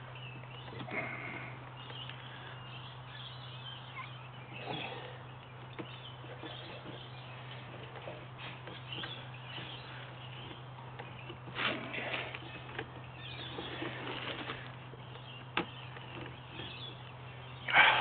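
A steady low hum with faint, short, irregular sounds every few seconds. The busiest of these come about twelve seconds in and just before the end.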